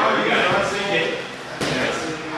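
Indistinct voices talking in a gym hall, with one sharp thump about one and a half seconds in.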